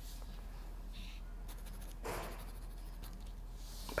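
Pen writing on paper, faint and scratchy, as a request form is filled in by hand; a slightly louder scrape about two seconds in.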